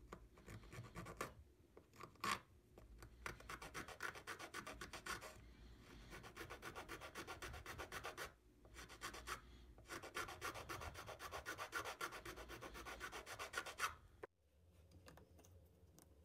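Small needle file rasping back and forth on a small piece of wood in quick, short strokes, in several runs broken by brief pauses, stopping shortly before the end.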